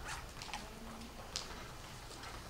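Faint room tone at a lectern during a pause in a lecture, with a few soft clicks and rustles.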